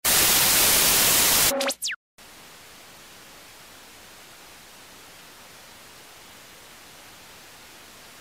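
TV-static sound effect: a loud burst of hissing white-noise static for about a second and a half, then a couple of quick falling electronic tones and a brief cut to silence. After that a steady, much quieter static hiss carries on.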